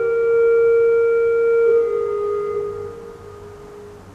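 1885 Hilborne L. Roosevelt pipe organ (Opus 290) holding a soft chord of steady, pure-sounding notes. The notes are released about two to three seconds in, and the sound dies away into the church's reverberation.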